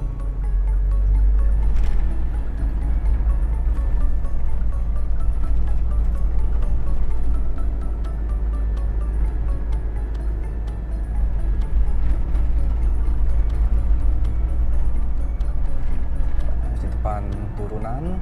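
Steady low rumble of a car's engine and tyres heard inside the cabin while driving on a paved road, with music playing over it.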